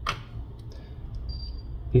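A single light click as the opened smartphone is picked up and turned over by hand, followed by faint handling noise.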